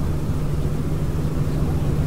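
Steady low background hum and rumble, with no clear events in it.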